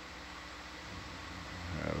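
Steady background hiss with a faint low electrical hum: the room tone of the dive's audio feed.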